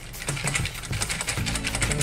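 Wire whisk beating eggs in a stainless steel bowl: a rapid, even clatter of the wires striking and scraping the metal. Background music plays underneath.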